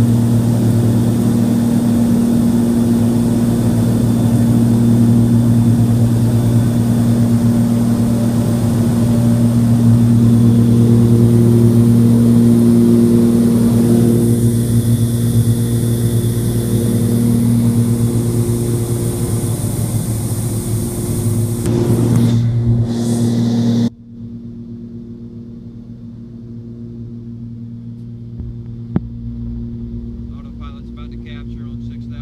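Cabin drone of a Cessna 340's twin turbocharged piston engines and propellers in flight: a loud, steady low hum with a hiss above it. About 24 seconds in, the sound drops suddenly to a quieter, duller hum without the hiss.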